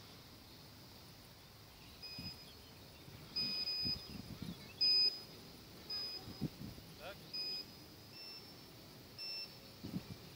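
Short high-pitched electronic beeps, about seven at irregular intervals with some held longer than others, the pitch edging slightly higher in the later ones. A few brief low rumbles come between the beeps.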